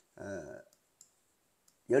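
A man says a short hesitant "eh", then one faint sharp click about a second in, made by the computer input he is drawing on the screen with.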